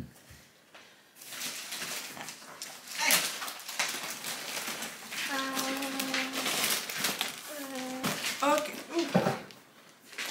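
A voice humming a long, steady 'mmm' about five seconds in, with short vocal sounds near the end, over light clatter and rustling.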